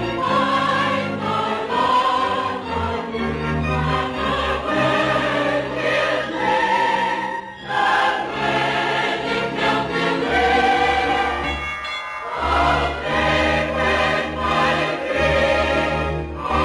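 A choir singing sustained phrases over an orchestra, as in a film score's finale, with two short breaks between phrases.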